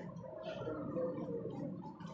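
Indistinct, muffled voices of people nearby, with faint light ticks.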